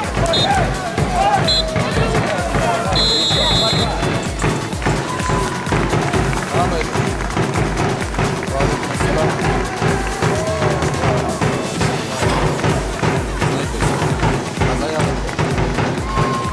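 Background music with a steady bass beat and a singing voice. Under it, a referee's whistle blows twice briefly and then once long, ending about four seconds in: the full-time signal.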